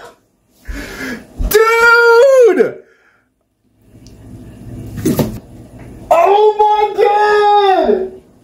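A man's long, drawn-out, high-pitched cries of excitement, two of them, one about a second and a half in and one about six seconds in, each held on one pitch before falling away. Between them a soft rustle and a single sharp knock.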